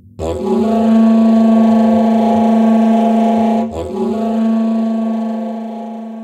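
Music: a loud, held low note with many overtones starts suddenly, sounds again a little before four seconds in, and then slowly fades out as the closing note of a track.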